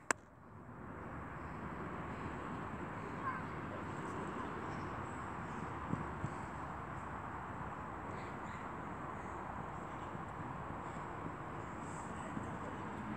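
Steady, faint outdoor background noise with a thin, high, constant whine over it. It drops out briefly at the start, and there are a couple of faint short sounds near the middle.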